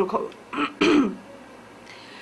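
A woman's voice breaks off, and she clears her throat once: a breath, then one short rough burst just under a second in, followed by a quiet pause.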